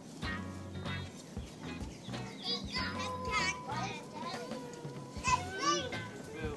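A group of children's voices chattering and calling out over background music.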